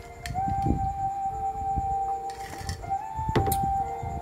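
A steady, held flute-like tone from background music carries on throughout. Over it come low handling knocks and a sharp clink near the end as a glass of iced coffee is picked up.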